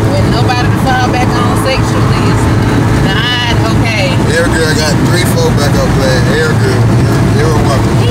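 Steady low drone of a car's cabin while driving, with people's voices over it.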